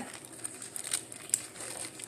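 Quiet rustling with a few soft clicks from hands handling food.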